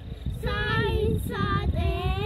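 A young child singing a simple song in short phrases of held, high notes, with a brief gap between phrases. Wind rumbles on the microphone underneath.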